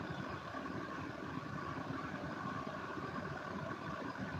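Low, steady background hiss of an open microphone carried over an internet voice-chat stream, with no speech or other events.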